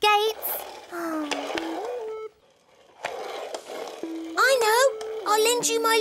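A young cartoon voice humming and vocalising without words, in sliding, sing-song tones, with a short pause just before the middle.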